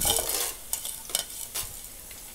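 Tempering sizzling in hot oil in a pan as chana dal is dropped in among the seeds and dried chillies: a burst of hissing right at the start that dies down to a faint sizzle with a few crackles.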